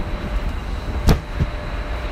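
Factory ambience: steady low machinery rumble, with one sharp knock about a second in and a lighter knock just after it.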